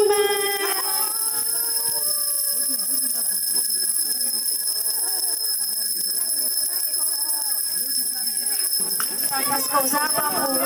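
Many small brass hand bells jingling continuously as a group of children ring them together, with children's voices chattering throughout. The bells are rung to summon Ježíšek, the Christmas gift-bringer.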